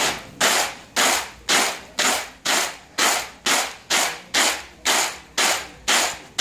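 Dried cacao beans tossed and caught in a flat woven basket tray, rattling against the weave and each other with each toss, about two tosses a second in a steady rhythm. The beans are being winnowed by hand to shake out husk and debris before bagging.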